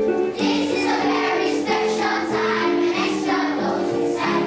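A children's choir singing with instrumental accompaniment. The voices come in about a third of a second in, over notes already sounding.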